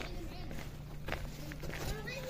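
Voices of children calling out as they play in an open plaza, over footsteps on paving, with a couple of sharp knocks about a second in and near the end.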